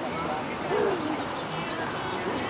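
Outdoor town-square ambience: steady background noise with high bird chirps and a short hoot-like call about a second in.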